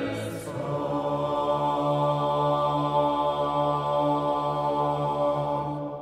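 Male vocal ensemble singing Renaissance polyphony a cappella, part of the Kyrie of a Requiem. The voices hold a sustained chord over a low note, then release it near the end, leaving a fading reverberant tail.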